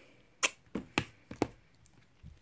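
A cardboard eyeshadow palette being closed and handled against other palettes, making about five short, sharp taps and clicks in quick succession.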